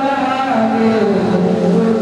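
A man's voice singing a naat into a microphone, holding a long note that slides down in pitch about half a second in and settles on a lower note.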